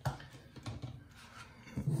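Faint handling noise on a tabletop: a soft knock right at the start, then a few light taps as objects are moved about.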